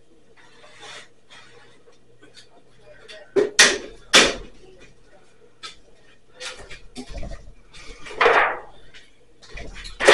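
Household knocks and clatter in a small kitchen: two loud sharp knocks close together about three and a half seconds in, a run of lighter clicks a few seconds later, and a longer, louder rush of noise near the end, with an indistinct voice.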